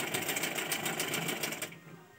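Sewing machine running with a fast, even clatter of stitches, stopping shortly before the end.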